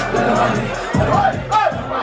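Live hip hop beat over a club sound system, with shouted vocals and a crowd yelling along. The heavy bass drops out briefly about a second in and again near the end.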